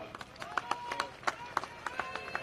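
Scattered, irregular handclaps from a large outdoor rally crowd, with a few short faint tones mixed in.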